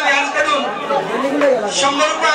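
Several people's voices speaking at once, with no music.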